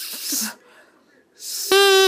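Drinking straw with a cut end blown as a makeshift double reed: a short breathy hiss at first, then, near the end, a loud buzzy reed tone that starts abruptly and holds one steady pitch.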